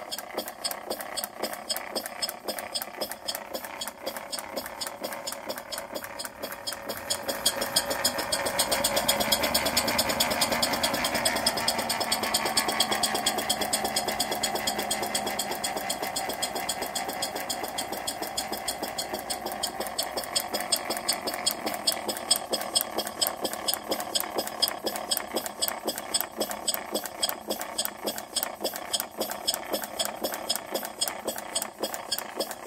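Model Corliss steam engine running, its valve gear and exhaust beating out a rapid, even rhythm. The beat grows louder about seven seconds in, then slowly quietens again.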